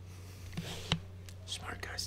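Faint whispering over a steady low hum, with one sharp click about a second in.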